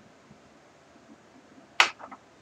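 Quiet room tone, then a single short, sharp click near the end.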